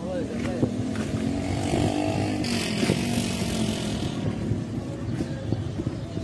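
An engine running with its pitch rising and falling, as if a motor vehicle is passing, with voices in the background.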